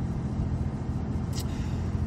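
Steady low rumble of a running car heard from inside the cabin, with a steady low hum beneath it.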